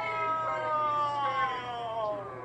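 A young man's long, drawn-out wail of dismay: one held cry, slowly falling in pitch, heard through a television's speaker.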